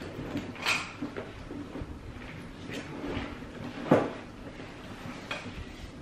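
Handling noise of a canvas pouch and items being packed into a leather tote bag, with a few light clicks and one sharper knock about four seconds in.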